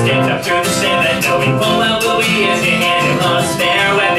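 Acoustic guitar strummed steadily as accompaniment to live singing.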